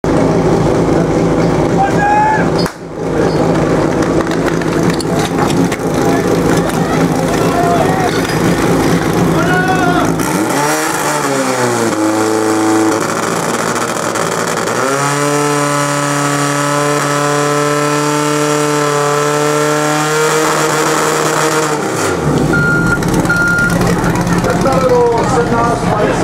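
Portable fire pump engine running at low revs, then revving up with a rising pitch about ten seconds in and holding high and steady while it drives water through the attack hoses, dropping back a couple of seconds before the end. Spectators shout over it, and two short beeps sound near the end.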